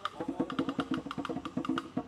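Afro-Cuban rumba percussion: a steady pattern of sharp wooden clicks, with conga drums coming in just after the start and playing a fast run of strokes over it.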